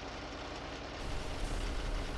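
A vehicle engine running as a steady low rumble among street noise, the rumble growing stronger about a second in.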